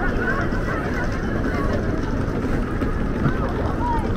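Crowd chatter: many indistinct voices talking at once over a steady low rumble.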